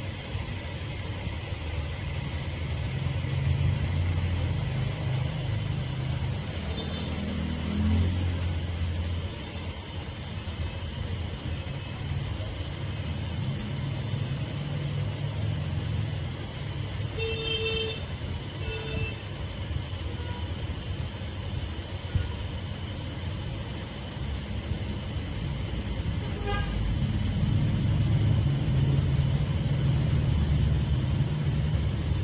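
Street traffic: a low, uneven rumble of passing vehicle engines, with two short horn toots about two-thirds of the way through.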